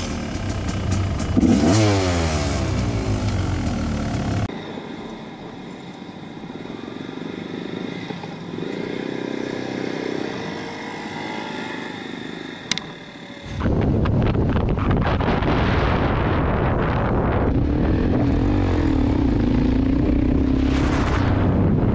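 Motorcycle engine and road noise recorded on helmet cameras across three separate ride clips. The engine revs up and down near the start, runs more quietly with a single sharp click in the middle stretch, then runs loud and steady near the end.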